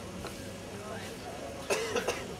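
A person coughing, a short loud cough near the end, over the low murmur of a waiting crowd.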